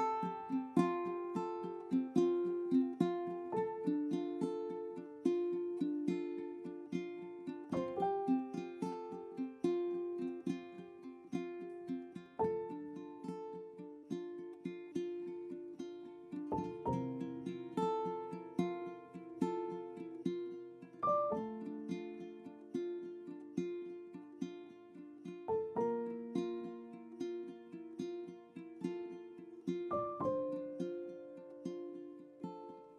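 Background music: a light plucked-string tune of quick picked notes in a steady rhythm.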